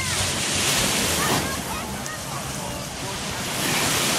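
Ocean surf washing onto a beach, rising and falling, with wind buffeting the microphone.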